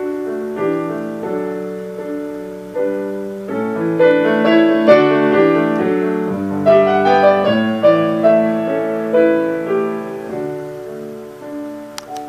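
Yamaha piano played solo: slow sustained chords that build to a louder, fuller passage in the middle, then ease off.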